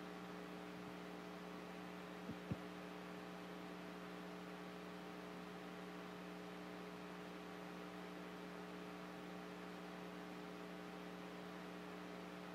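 Steady electrical hum with a stack of even overtones, typical of mains hum in a microphone or sound-system feed. Two faint short clicks come about two and a half seconds in.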